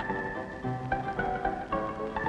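Background music: a brisk instrumental tune with notes changing several times a second.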